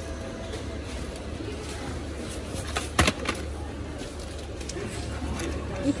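A steady low hum of shop background, with a small child handling a cardboard product box; one sharp click about halfway through and a few faint ticks of the packaging around it.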